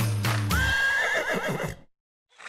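A horse whinnying: one call that rises, then wavers, over the last notes of music that stop under a second in. The whinny cuts off abruptly near the end.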